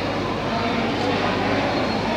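Steady background din of a busy indoor food court: indistinct voices over a constant low hum, with a faint click about a second in.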